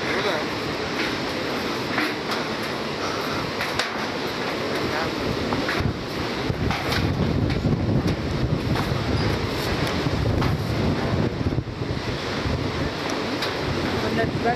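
Steady rush of the Iguazu River and the distant Devil's Throat falls, with wind buffeting the microphone, the low rumble getting heavier about halfway through.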